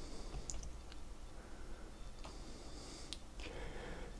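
Quiet room tone with about four faint, scattered clicks of a computer mouse, one of them advancing the presentation to the next slide.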